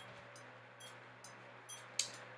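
Quiet room tone: a faint steady low hum with a few soft, faint clicks.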